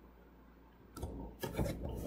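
Stylus rubbing and scratching across a tablet surface as a figure is written. It starts about a second in as a rough, scratchy noise lasting about a second and a half.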